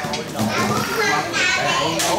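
Several voices talking and calling over each other at once, a lively babble of a group gathered around a meal.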